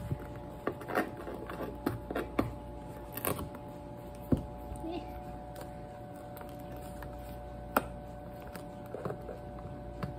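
Fingers picking, scratching and pressing at the sealed edge of a cardboard box to break its seal: scattered small taps and scrapes, with two sharper clicks, one near the middle and one later, over a faint steady hum.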